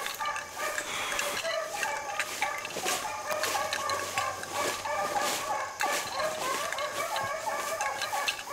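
A pack of beagles baying continuously on a rabbit's track, several voices overlapping, with brush rustling close by.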